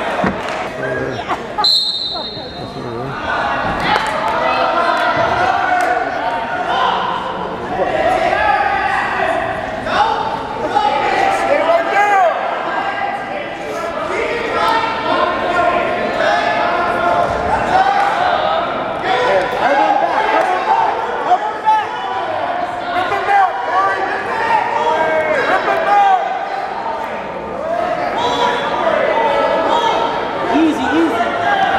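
Spectators in a gym shouting and talking over a wrestling bout, with a short high referee's whistle about two seconds in and scattered thuds of the wrestlers on the mat.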